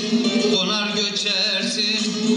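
Bağlama (Turkish long-necked lute) being played, with a man singing a wavering, held melodic line over it.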